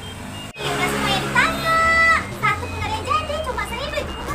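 High-pitched children's voices shouting, with one long held cry and several shorter calls, over a low steady hum. The sound cuts out briefly about half a second in.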